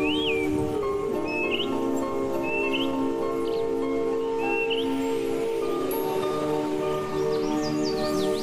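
Calm instrumental background music of long, held notes, with short rising bird chirps heard every second or two over it.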